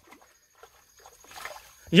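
Faint rustling and scuffing in grass as hands work low at the ground. A man's voice starts right at the end.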